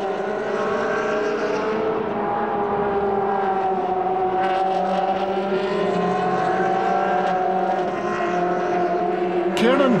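Ferrari 360 Challenge race car's V8 engine running under sustained power, holding a steady note that sags and rises slowly in pitch. A man's voice starts right at the end.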